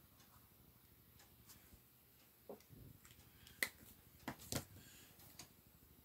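Mostly near silence, with a few short, sharp clicks and taps in the second half as a brush pen is lifted off the sketchbook and handled, the loudest about halfway through.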